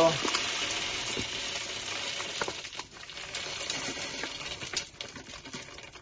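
Coarse-grain dishwasher salt pouring from a plastic bag into a dishwasher's salt reservoir: a steady hiss of falling grains with scattered ticks of crystals striking, thinning out about halfway through.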